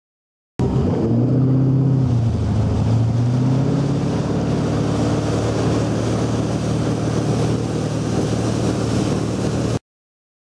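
Ski boat's engine running under load while towing a water skier, with water rushing along the hull. The engine pitch dips about two seconds in, then climbs back and holds steady. The sound cuts in and out abruptly.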